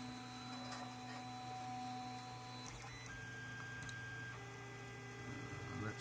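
Creality CR-10S 3D printer running its bed-leveling routine: the stepper motors give off a faint whine of steady tones that switch pitch a few times, over a steady low hum.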